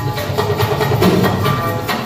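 Music with a steady beat and held instrumental notes, played for a children's group dance routine.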